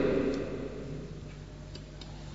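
A pause in a man's talk: his voice dies away, leaving a steady low electrical hum with a few faint ticks.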